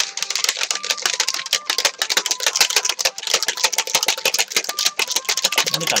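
Plastic protein shaker bottle of milk and whey powder shaken hard by hand: a continuous fast rattle of many sharp clacks a second, with liquid sloshing inside.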